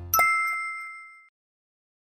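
A single bright ding, an editing sound effect, that rings and fades out over about a second as the background music cuts off.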